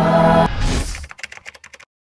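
Choral music cuts off abruptly about half a second in, followed by a brief whoosh and then a quick run of keyboard typing clicks, about a dozen a second, that stops just before the end.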